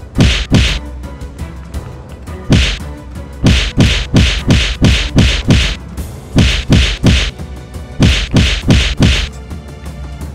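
Rapid runs of punchy whack sound effects, about three a second in bursts of two to six, each with a short falling thud, timed to a cat's flurry of paw swipes at a toy frog.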